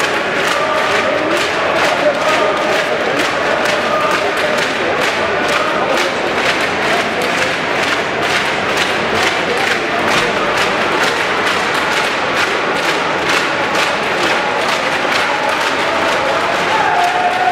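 Arena crowd of spectators shouting and chanting encouragement, with steady rhythmic clapping and a few drawn-out shouted calls.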